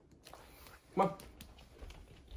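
A puppy giving one short, sharp bark about a second in, over a quiet room, with a person saying "come on".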